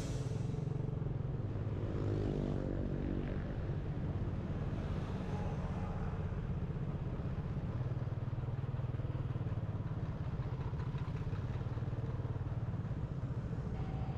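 Motorcycle engine running steadily while riding along a city road, with road and traffic noise; a brief rise and fall in pitch comes a couple of seconds in.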